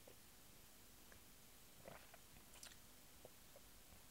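Near silence, with a few faint mouth clicks and lip smacks around the middle, from someone tasting a sip of whisky.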